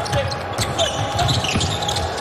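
A basketball being dribbled on a hardwood court, a run of short low bounces during live play in a large, mostly empty arena.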